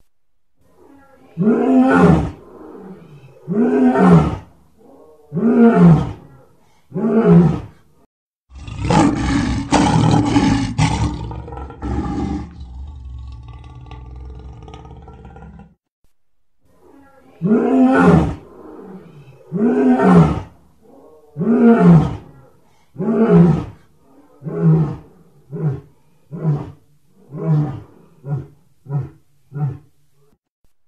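Lion roaring in bouts: deep roars spaced about two seconds apart, each falling in pitch, with a rougher, noisier stretch in between. The second bout starts with long roars and tails off into shorter, quicker grunts, the usual ending of a lion's roaring sequence.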